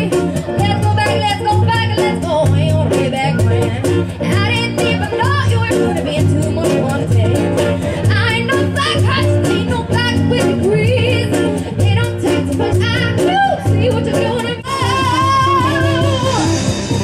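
Live band jamming: a voice singing over a steady bass line, guitar and busy percussion, with a long held note near the end.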